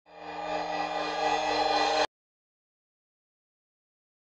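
A swelling electronic tone, many steady pitches layered over a noisy top, that builds in loudness for about two seconds and then cuts off abruptly.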